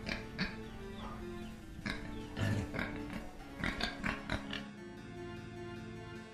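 Background music, with a pig oinking several times in short grunts over the first four and a half seconds or so.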